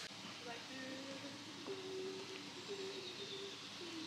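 A person softly humming a slow tune of held notes that step up and down in pitch, over faint outdoor background hiss.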